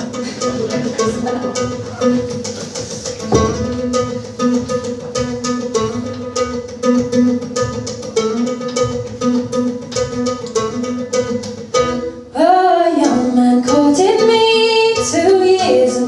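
A live folk song opening on plucked acoustic guitar over a steady low note, with a woman's singing voice coming in about twelve seconds in.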